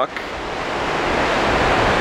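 Steady rush of wind and churning wake water on the open stern deck of a cruise ship under way, growing slightly louder.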